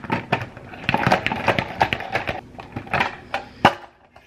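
Plastic push-knob salad spinner being worked to spin rinsed asparagus dry: a rapid, irregular run of plastic clicks and rattles that stops just before the end.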